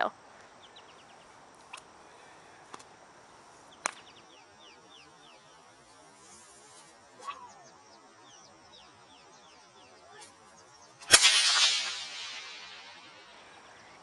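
A single loud bullwhip crack about eleven seconds in, thrown as a circus crack, which places the crack about half a whip length from the thrower. The sharp snap is followed by a decaying noise over about a second and a half. Before it there are a few faint clicks and faint chirping.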